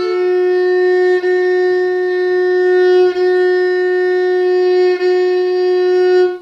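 Gadulka, the Bulgarian bowed folk fiddle, sounding one long, steady F-sharp stopped with the middle finger on the second string. The bow changes direction three times, each change heard as a brief dip in the tone.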